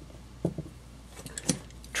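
Steel machinist's tools handled on a wooden workbench: a soft knock about half a second in as a drill chuck is set down, then a few light metallic clicks near the end as a set of transfer punches in its stand is picked up.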